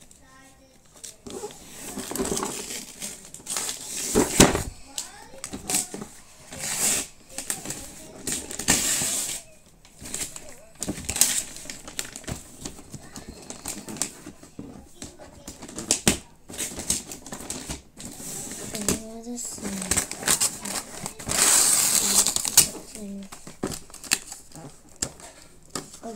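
Wrapping paper being torn by hand off a gift box, in repeated irregular rips and crinkling rustles, with a longer tearing stretch near the end.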